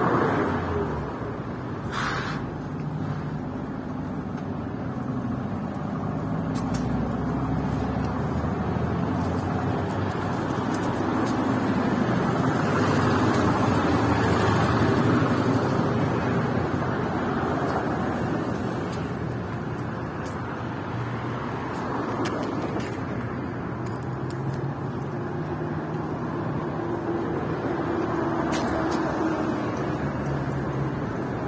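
Road traffic on a city street: vehicle engines humming and tyres rolling by, growing louder as a vehicle passes around the middle.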